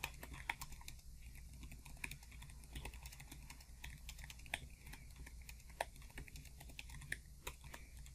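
Computer keyboard being typed on: a fast, irregular run of faint keystroke clicks as a sentence is typed.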